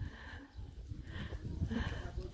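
Faint footsteps of walkers on an asphalt road, a few soft scuffs and taps, with low wind rumble on the microphone.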